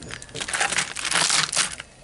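Dry old beeswax comb crunching and crackling as pieces are put into a metal pot, an irregular crackle that dies away near the end.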